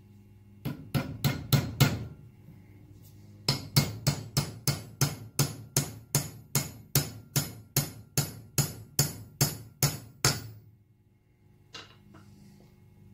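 Small ball-peen hammer driving roll pins into a drilled steel bar on an anvil, metal on metal with a brief ring after each blow: about five quick strikes, a short pause, then a steady run of about twenty strikes, roughly three a second, and one light tap near the end.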